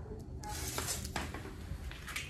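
Rustling handling noise with a few light knocks, starting about half a second in, over a steady low hum.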